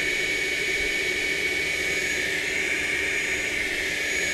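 A steady mechanical drone with a constant high whine, unchanging throughout.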